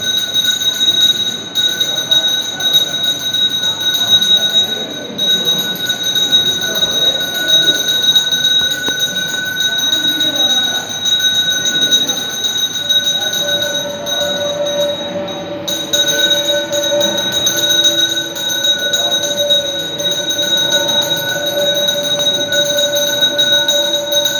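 Temple bells ringing continuously for the deeparadhana lamp offering, a steady high-pitched ringing. About halfway through, a lower held tone joins in.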